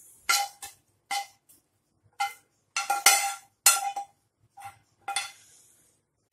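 A metal spoon clinking against a frying pan and a steel plate while scraping scrambled egg out of the pan: about a dozen irregular sharp clinks, each ringing briefly.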